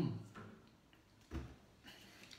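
Handling noise as an acoustic guitar is picked up and swung into playing position, with one dull thump about a second and a half in.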